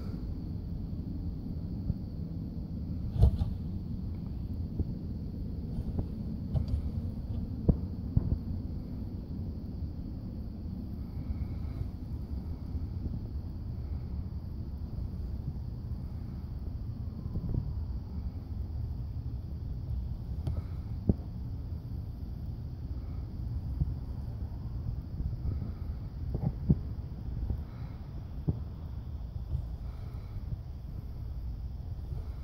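Steady low outdoor background rumble, with a few faint clicks and knocks scattered through it.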